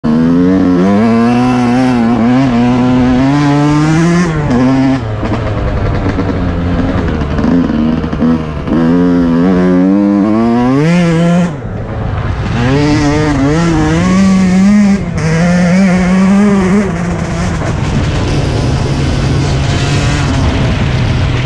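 Yamaha YZ125 two-stroke single-cylinder dirt bike engine under way, its pitch repeatedly climbing as it revs and falling back off throttle. It dips briefly about halfway through, then settles to a steadier, lower note near the end.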